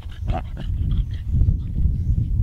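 Lion cub growling while feeding on a zebra carcass: a short cry about a third of a second in and a few shorter ones after it, over a steady low rumble.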